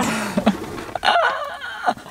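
A woman laughing heartily, ending in a long drawn-out "ah" about a second in.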